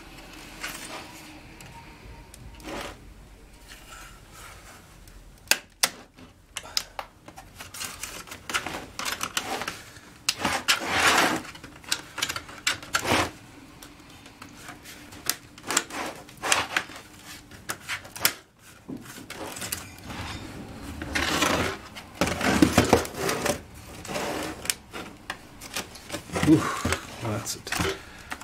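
Plastic laptop casing being handled: scattered sharp clicks, knocks and rubbing as the Lenovo B575e's chassis is turned over and its lid and palm rest are moved on a wooden bench.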